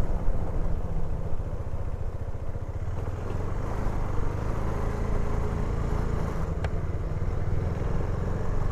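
Motorcycle engine running steadily under way, a low, rapid pulsing engine note with road and wind noise over it.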